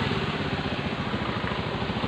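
Honda Beat F1 scooter's small single-cylinder four-stroke engine idling with a steady, even putter. The scooter has just had its CVT reassembled with genuine parts.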